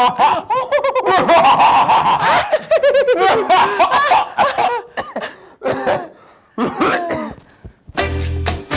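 Two people laughing loudly together in an exaggerated, theatrical villain's laugh. The laughter dies down about five seconds in, with one short last burst near the end.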